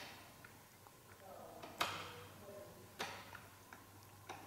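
A few sharp, faint metal clicks, the clearest about two and three seconds in, from a wrench working the bleeder screw on a motorcycle's rear brake caliper while the brake is being bled.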